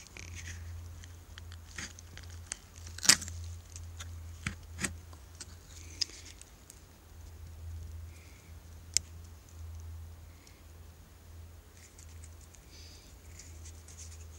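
A folding knife blade scraping at resin-soaked lodgepole pine fatwood, with a few sharp clicks and taps, the loudest about three seconds in.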